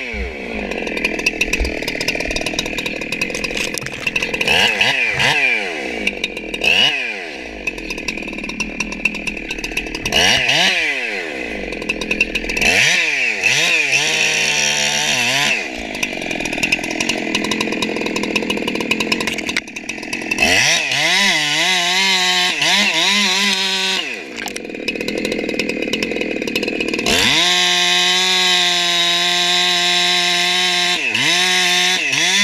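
Husqvarna 372XPW two-stroke chainsaw, its carburetor and chain still being dialed in, revved up and dropped back again and again. From about 27 seconds in it is held steady at high revs while cutting into a redwood trunk.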